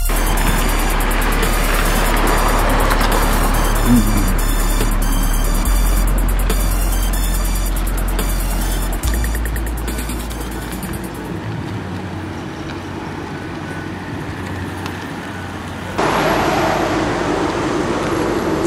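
Hip-hop beat intro with deep held bass notes and fast ticking hi-hats. It stops about eleven seconds in, leaving a car running with street noise. Near the end a louder car sound with a steady hum comes in.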